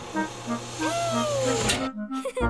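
Cartoon sound effect of a dentist's chair being raised and tilted back: a steady motor hum under a light repeating two-note figure, with a whistling glide that rises and then slowly falls in the second half. It all cuts off just before the end.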